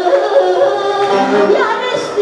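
A woman singing into a microphone in long held notes over a live band of electric keyboard and bağlama, played through a PA system.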